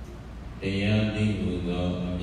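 A male monk's voice chanting in a drawn-out, steady-pitched recitation tone. It starts about half a second in, after a brief pause.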